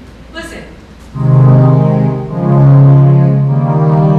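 Synth voice on a Roland home organ playing loud, sustained chords that begin about a second in and move to new chords twice.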